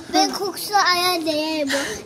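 A young child's voice in a sing-song chant, holding one long drawn-out note near the middle.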